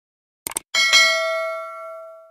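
Subscribe-button sound effect: a quick mouse click about half a second in, then a notification bell ding that rings and fades away.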